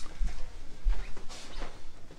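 Two soft, low footstep thuds on the floor while walking into a small room, with faint rustling handling noise and a sharp click at the start.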